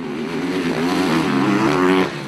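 An engine revving, its pitch wavering up and down and growing louder, cut off abruptly at the end.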